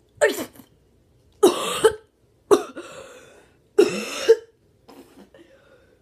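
A boy coughing hard in four loud bouts, with a few weaker coughs near the end, his throat burning from swallowed hot sauce.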